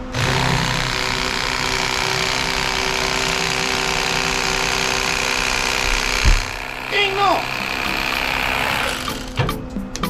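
Electric fillet knife motor switched on and running steadily as its serrated blades saw through a fish fillet, then switched off about nine seconds in. A single thump comes about six seconds in.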